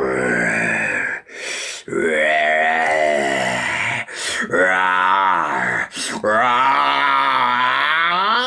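A person's voice making long, drawn-out moaning, groaning cries, four in a row with pitch that rises and falls, broken by quick noisy breaths between them.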